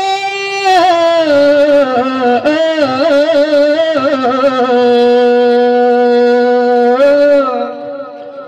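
A single voice sings one long unaccompanied phrase in the Acehnese rapai geleng style. The pitch winds and ornaments for the first few seconds, settles on one long held note, then dips and fades near the end. No drumming is heard.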